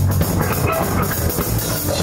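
Live rock band playing an instrumental passage: electric guitars over a drum kit, with steady drum hits.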